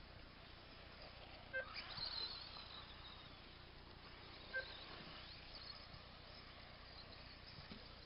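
Faint, high-pitched whine of radio-controlled off-road buggies racing, rising and falling as they accelerate, with two short sharp blips about a second and a half and four and a half seconds in.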